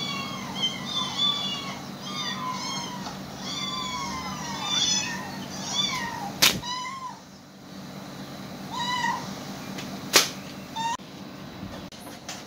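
Cats meowing: a rapid string of short, high, arching meows through the first five seconds or so, then a few spaced meows later on. Two sharp clicks, the loudest sounds, come about six and a half and ten seconds in.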